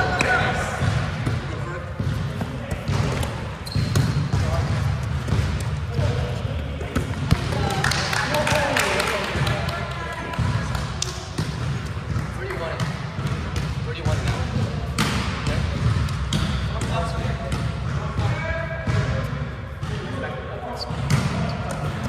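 Indoor volleyball rally in a large, echoing gym: sharp thuds of the ball being struck and hitting the hardwood floor, mixed with players' voices calling out.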